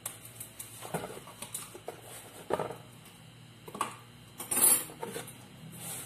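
Plastic seasoning tub knocked and scraped against a plastic mixing basin as dry seasoning mix is tipped out of it: a handful of light knocks, then a longer rustling scrape about four and a half seconds in.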